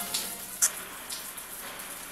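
A shower head running: a steady hiss of falling water with a few sharper splashes.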